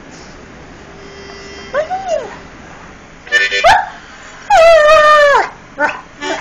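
Irish Setter howling: a faint rising-and-falling whine about two seconds in, a couple of short yips, then one long, loud howl that drops in pitch as it ends.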